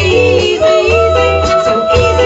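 Rocksteady band playing live, with female vocals holding a long note over the bass.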